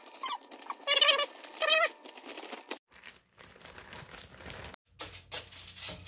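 Two short, wavering, high-pitched cries about a second in, the loudest sounds here, over the crinkle and squelch of hands kneading ground-beef meatball mix inside a plastic zip-top bag. Near the end, aluminium foil crinkles as it is pressed over a baking tray.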